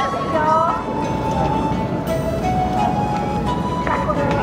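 A voice singing or chanting in long held notes that slide up and down, over a steady low outdoor rumble.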